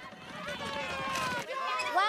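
Cartoon character voices making wordless vocal sounds over a background hum.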